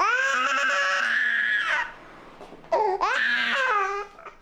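Infant crying: a long, high-pitched wail that rises at the start and is held for nearly two seconds, then a second wail starting about three seconds in.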